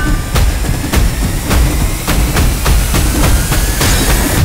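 Trailer sound design: an even pounding pulse of percussive hits, about three to four a second, over a deep rumble, with a faint rising tone building towards the end. It cuts off sharply just after.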